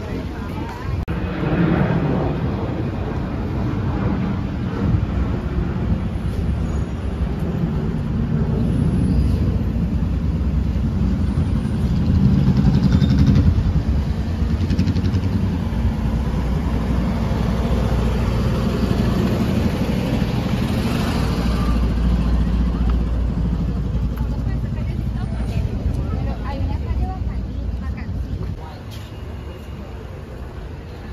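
Street ambience: vehicle traffic running steadily, with indistinct voices of people nearby. It drops in level near the end.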